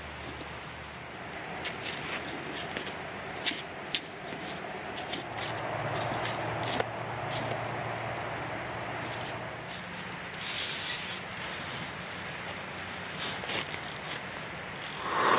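Deer hide being pulled and peeled off a hanging carcass: irregular rubbing and tearing with scattered small clicks, over a faint steady low hum in the middle of the stretch.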